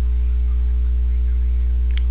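Steady low electrical hum, like mains hum picked up by the recording, with a few fainter higher tones above it and no change through the pause.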